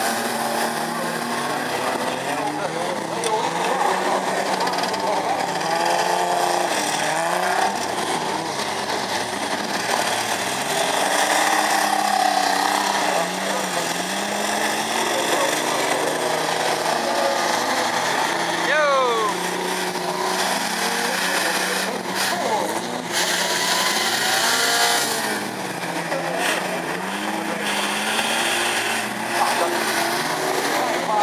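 Several banger race cars' engines running together, a dense mix of notes rising and falling as they rev hard around a dirt oval. A few short sharp noises come in the second half.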